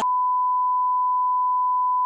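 A censor bleep: one steady, single-pitched tone dubbed over a speaker's words in a TV broadcast, cutting in and out abruptly where the speech is removed.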